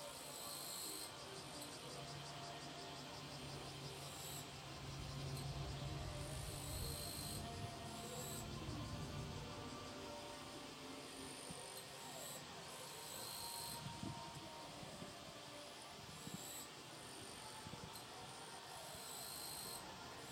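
Faint outdoor ambience of insects calling in short high-pitched bursts, about a second long and repeated every few seconds. A low steady hum runs underneath in the first half.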